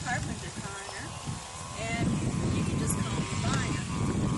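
A person speaking, with wind rumbling on the microphone.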